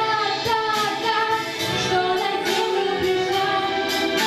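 A girl singing a Russian-language song into a microphone, with musical accompaniment.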